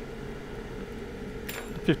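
A single short, sharp click of small hand tools or parts on the iPhone 6 being worked on, about one and a half seconds in, over a steady background hum.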